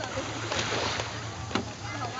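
Wakeboard tow boat's engine idling across the water as a low, steady hum, with a brief wash of noise about half a second in and a single click near the end.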